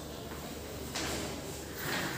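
Room noise with a steady low hum, and soft scuffing movement sounds about a second in and again near the end.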